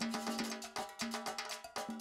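Background music with a quick, even percussion pattern of sharp hits over steady pitched notes.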